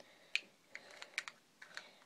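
Small, irregular plastic clicks and taps, about seven in two seconds, from cosmetic packaging being handled.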